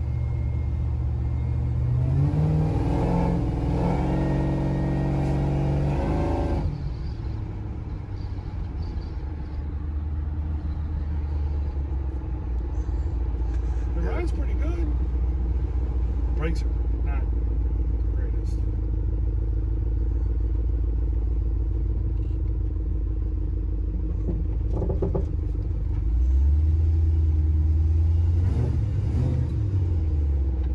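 Supercharged Chevy square-body pickup's engine heard from inside the cab. The revs climb under throttle for a few seconds, drop off suddenly about six seconds in, and settle into a steady low cruise. They pick up again near the end.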